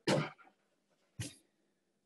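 Two short coughs about a second apart, the first louder and longer.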